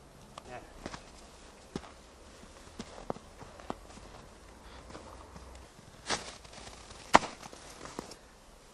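Footsteps in snow, scattered and irregular, with two louder sharp cracks about six and seven seconds in.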